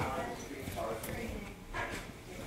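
Indistinct talk among several people in the background, with footsteps as they walk out of the room.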